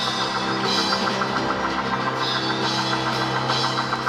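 Live church band music with a drum kit keeping a steady beat under sustained held chords.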